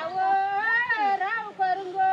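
A woman's voice singing a slow melody in long held notes that bend and slide in pitch.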